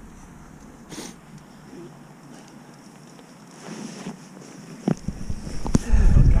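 Handling noise from a fishing keepnet and mesh weigh sling being worked by hand: a few brief rustles and knocks, with two sharp knocks near the end.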